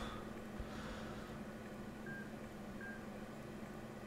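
Two brief faint electronic beeps about two seconds in, under a second apart, over a low steady electrical hum.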